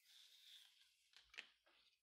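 Near silence: faint room tone with one soft click about one and a half seconds in.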